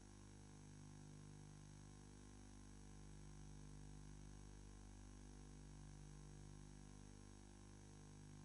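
Near silence with a steady low electrical hum, several fixed tones held without change.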